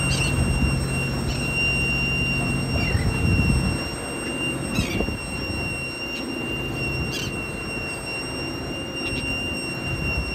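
A boat's engine running under wind and water noise, with a steady high-pitched whine over it and several short falling squeaks. The low engine hum eases off about four seconds in.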